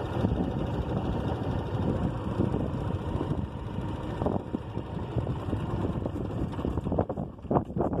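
A slow-moving road vehicle running along asphalt, with wind buffeting the microphone.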